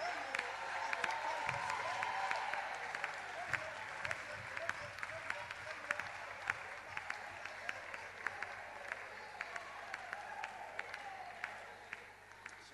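Congregation applauding, dense clapping with sharp individual claps standing out, and voices calling out among the crowd. The applause thins out toward the end.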